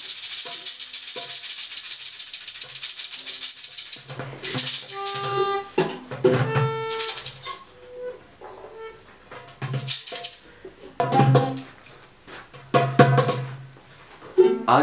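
A hand shaker rattles fast and steadily for about four seconds. Then a small toy horn is blown in several short pitched toots, the clearest about five and seven seconds in.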